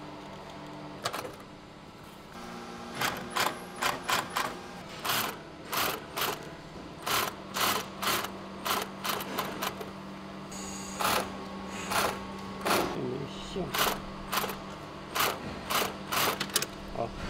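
Industrial post-bed sewing machine stitching the upper of a roller skate in short bursts, about two a second, over a steady low hum that starts about two and a half seconds in. A single click comes about a second in.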